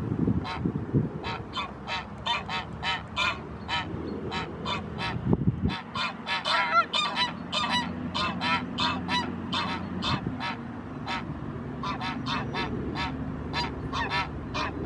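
Greylag geese honking: a long run of short, rapid honks, about three or four a second, thinning briefly about ten seconds in before picking up again.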